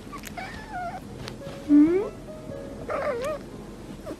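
A cat giving three short meows, the loudest near the middle rising in pitch, over background music.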